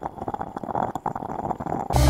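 A dense run of rapid, irregular clicks, a sound effect under the animated title, that cuts off near the end as music comes in.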